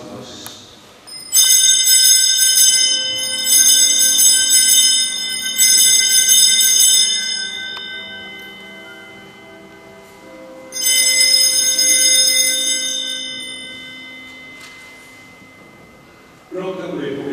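Altar bells rung at the elevation of the host during the consecration. They ring three times about two seconds apart, then once more after a pause, each ring fading slowly.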